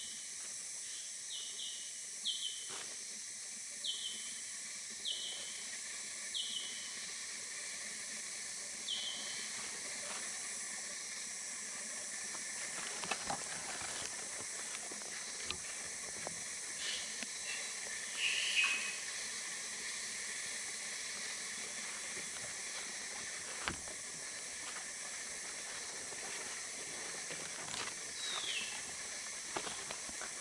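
Steady high hiss of tropical forest insects, with a bird calling in short falling whistled notes, about one a second at first and then only now and then. Faint snaps of footsteps on leaf litter come once in a while.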